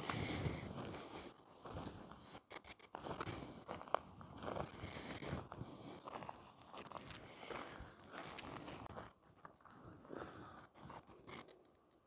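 Footsteps crunching and rustling through tall dry grass and weeds, an irregular run of crackling steps with one sharp click about four seconds in, dying away near the end.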